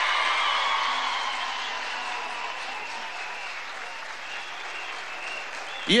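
A large crowd applauding and cheering, loudest at first and slowly dying down.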